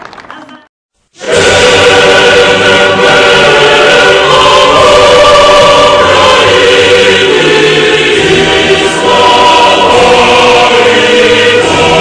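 The sound fades into a brief silence, then loud choral music starts about a second in and carries on with sustained massed voices.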